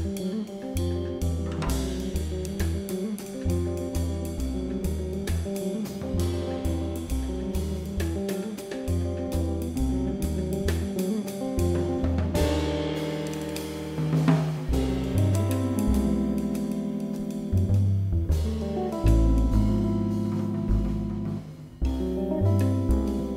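Live jazz trio playing: electric guitar lines over an upright double bass and a drum kit with cymbals. The bass moves in quick steps for the first half and holds longer notes in the second.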